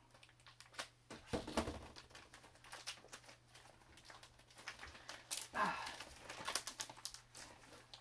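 A tough mailing envelope being worked open by hand and with scissors: scattered crinkling, rustling and small clicks of the packaging as it is pulled and torn. About five and a half seconds in there is a short falling vocal sound, like a grunt of effort.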